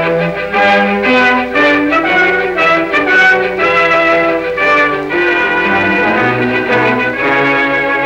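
Orchestral title music on a 1930s film soundtrack, with many instruments playing together and the melody moving in notes of about half a second each.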